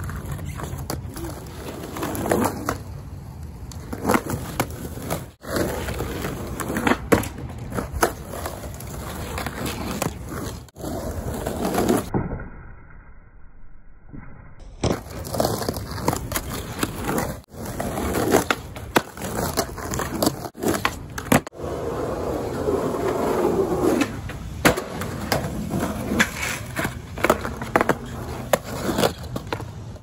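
Skateboard wheels rolling over rough, cracked asphalt and concrete, with frequent sharp clacks of the board and a brief quieter break about midway.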